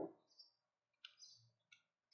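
Near silence, with a few faint, brief clicks.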